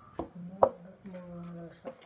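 Large tailor's shears cutting through stiff brown pattern paper: three sharp snips, the loudest about half a second in.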